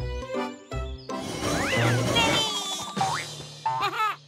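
Playful children's cartoon music with comic sound effects: a swooping pitch that rises and falls about halfway through, and quick rising swoops near the end.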